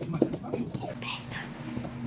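A person whispering, with a low steady hum that begins about halfway through.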